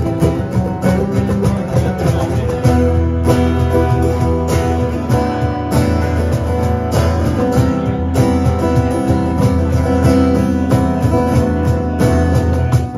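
Live acoustic band: two acoustic guitars strummed, with a cajon keeping a steady beat.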